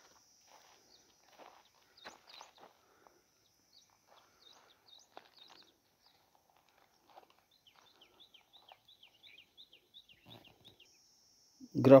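Faint rustling steps on dry soil and straw, with a bird calling a quick run of short, falling high notes, about four a second, in the second half. A faint steady high whine sits behind it, and a man starts speaking at the very end.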